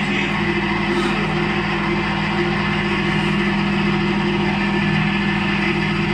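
Rice cake making machine running steadily: an electric motor belt-driving the screw extruder with a constant hum, while rice cake dough is pushed out of the nozzle.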